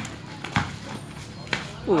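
A basketball bouncing on a concrete court as a player dribbles: three sharp thuds spread unevenly over the two seconds. A man's shout starts just before the end.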